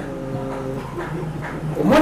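A man's voice drawing out one held syllable for about a second, then speaking again near the end.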